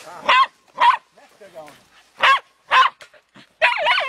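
Dog barking in sharp, high yaps at a weasel in a wire cage trap, the barks coming in pairs about half a second apart, three pairs in all.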